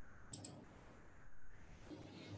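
Two quick clicks close together, like a computer mouse being double-clicked, over faint room tone.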